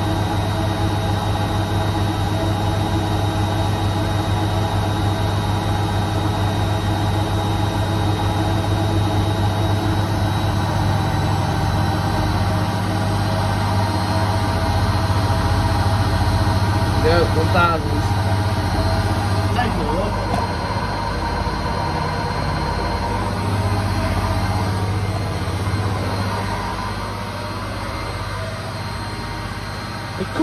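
Bendix front-loading washing machine on its final spin at about 1000 rpm with an unbalanced load: a steady motor whine over a low hum and a fast low pulsing from the drum. It eases slightly quieter near the end.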